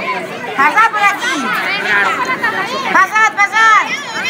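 Children's high voices chattering and calling out over one another.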